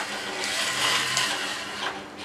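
Small DC gear motor of a hobby robot arm running with a steady whir through its plastic gears as the arm swings down.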